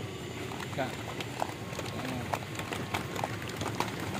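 A group of people exercising on a dry dirt ground: scattered, irregular scuffs and steps of many shoes, with faint voices in the background.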